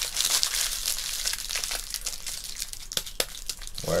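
Foil cheese wrapper crinkling steadily as it is folded up by hand, with a few sharper crackles near the end.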